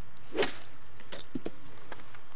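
Golf iron striking a ball off the grass: one sharp strike, followed by a few faint clicks.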